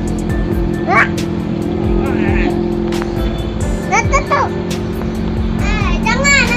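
A child's high voice in short rising-and-falling calls about a second in, around four seconds in and at the end, over a steady low hum.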